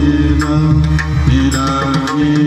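Live abhang devotional singing: a singer's held, gliding vocal line over sustained harmonium chords, with pakhawaj drum strokes.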